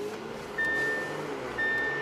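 Audi A6's seatbelt warning chime beeping twice, a single high steady tone about once a second, each beep lasting under half a second, because the driver is unbuckled. Under it is the low, steady running of the car's supercharged 3.0-litre V6 at low speed, heard from inside the cabin.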